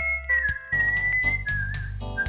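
Human whistling a lead melody in the style of electric-guitar licks: a held high note, a downward bend, another held note, then a wavering lower note near the end. It sits over an instrumental backing track with bass and drum hits.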